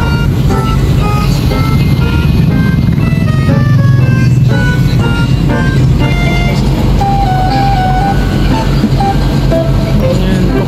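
Steady engine and road rumble inside a passenger minibus cabin, with a simple melody of music playing over it, one note after another.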